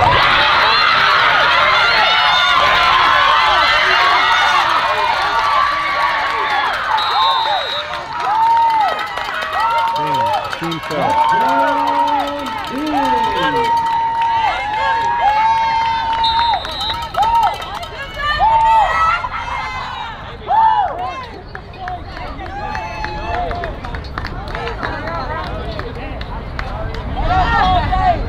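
A crowd of spectators and players cheering and shouting, loudest in the first few seconds, then a run of long shouted calls and chants repeated one after another.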